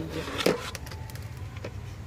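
Steady low background hum of a large store, with one short light knock about half a second in.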